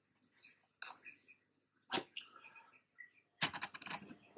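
Faint clicks and crackles of a cardboard box's tear strip being pulled open. The sharpest click comes about two seconds in, and a quick run of clicks and rustles of box handling comes near the end.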